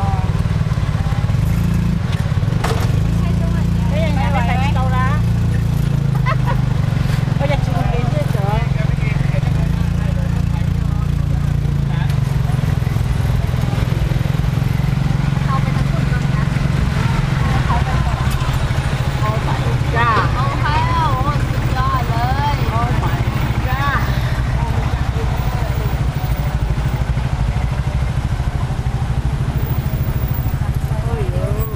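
Motor scooter engine running steadily as it tows a passenger cab along a street, a continuous low rumble heard from the cab, with voices talking over it.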